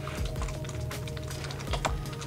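Wet, soapy hands rubbing together, giving quick irregular squelchy clicks, over steady background music.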